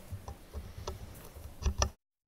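A few light clicks and knocks over faint room noise, the two loudest close together near the end, after which the sound cuts out abruptly.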